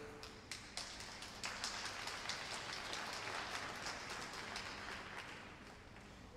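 Thin applause from a small audience: a few separate claps at first, filling out about a second and a half in, then slowly fading.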